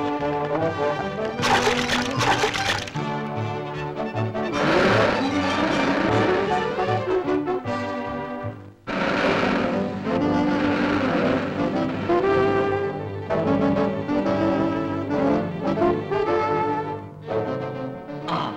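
Orchestral cartoon score with brass, running throughout, with a few bursts of hissing noise laid over it and a brief break just before the middle.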